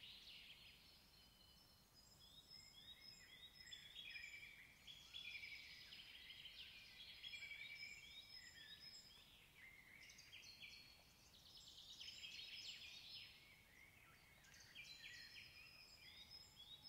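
Faint birdsong: several small birds chirping and trilling, overlapping at different pitches, with short runs of quick repeated notes.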